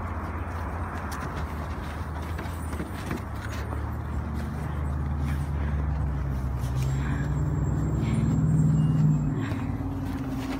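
A motor vehicle's engine running nearby, growing louder and rising in pitch for several seconds, then dropping away near the end, over a steady low rumble.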